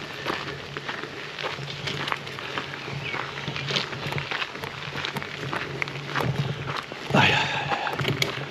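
Bicycle tyres rolling over a gravel path, with a steady run of irregular crunching and rattling clicks.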